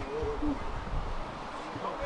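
A person's long, wavering call that ends within the first second, over faint open-air background rumble.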